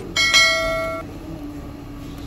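A click followed by a bright, loud bell ding that rings for about a second: the notification-bell sound effect of a subscribe-button animation.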